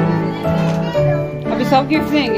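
Music playing with a bass line that steps to a new note about every half second, with children's voices talking and calling over it.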